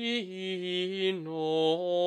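A solo male voice singing unaccompanied Gregorian chant: a slow melisma of long held notes that step down in pitch.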